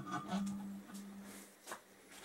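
A few light metallic clicks and scrapes as a steel stud remover tool is fitted down over an engine cylinder stud, with a faint steady hum underneath.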